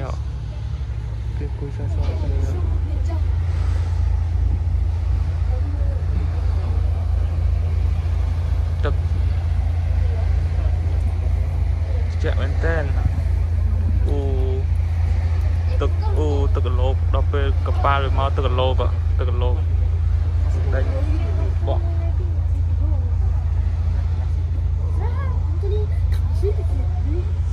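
A tour boat's engine droning low and steady, getting louder about two seconds in as the boat gets under way, with people talking over it from time to time.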